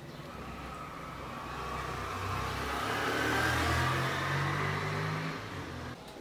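Beer poured from a glass bottle into a glass baking dish: a steady splashing pour with fizzing foam and a low gurgling tone from the bottle. It grows louder towards the middle and cuts off suddenly at the end.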